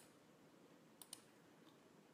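Near silence: room tone with two faint clicks close together about a second in.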